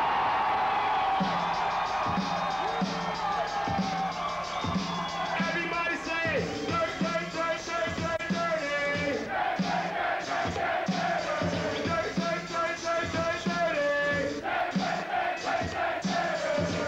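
Live crowd cheering and shouting in response to the MC, then a hip hop beat kicks in about a second in: regular drum hits, a steady repeating bass line and a looped melodic sample, with the crowd still audible under it.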